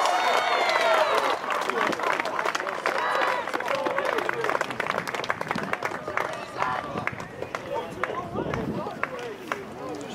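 Footballers and a few spectators shouting and cheering a goal, loudest in the first few seconds, with scattered hand claps running through.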